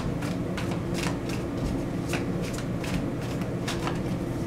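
A deck of tarot cards shuffled by hand, the cards slapping and sliding against each other in quick, irregular clicks. A steady low hum runs underneath.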